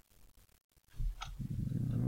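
A short quiet, then about a second in a man's voice comes in with a low, drawn-out syllable held at a steady pitch, leading into speech.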